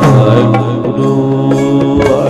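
Instrumental passage of Sikh shabad kirtan: a harmonium holding steady notes, with a few soft tabla strokes.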